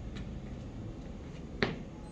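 A single sharp click, the loudest thing here, about one and a half seconds in, with a fainter tick just after the start, over a low steady hum.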